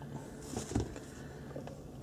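Quiet car cabin with a steady low hum, and a couple of faint knocks as a phone is handled at a magnetic vent mount.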